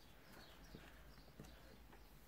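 Near silence: room tone with a few faint soft taps of a makeup sponge dabbed against the face.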